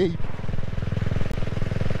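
2022 CCM Spitfire Six's 600cc single-cylinder engine running steadily under way, exhaling through its twin exhausts with the baffles still fitted.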